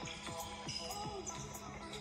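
A basketball being dribbled on a hardwood gym floor, the bounces heard under background music.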